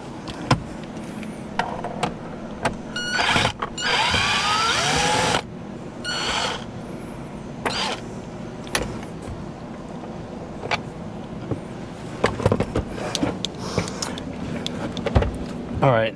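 Cordless electric screwdriver whirring in short runs, backing out the steering-column shroud screws, with clicks and knocks of the tool against the plastic trim. The longest run, about a second and a half, comes a few seconds in, with a shorter one just after.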